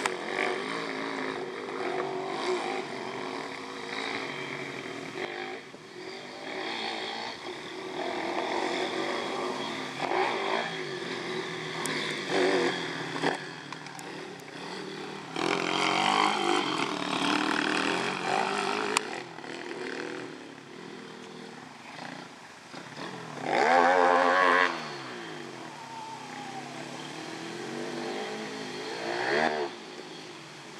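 Several pit bike engines revving up and down as the bikes ride round a dirt track, the pitch rising and dropping with throttle and gear changes. The loudest moment comes about three-quarters of the way through, when one bike passes close and its pitch falls away as it goes by.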